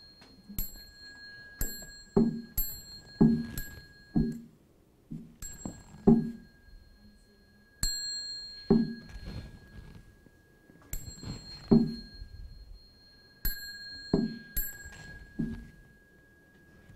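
A small Buddhist liturgical bell (yinqing) struck again and again in an uneven rhythm, its clear high ring lasting several seconds between strokes. The bell strokes are mixed with dull lower knocks, the instrument strokes that cue the bows of a chanting service.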